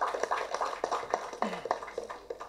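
Applause: scattered hand clapping from a small group, thinning out as it goes.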